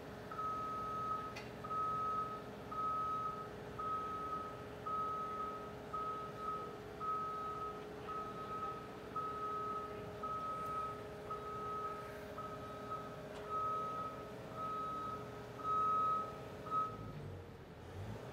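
Reversing alarm on construction machinery beeping about once a second, over the steady hum of a running engine. The beeping stops shortly before the end.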